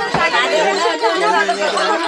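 Several people's voices talking over one another in lively chatter, with one voice holding a steady note for most of a second in the second half.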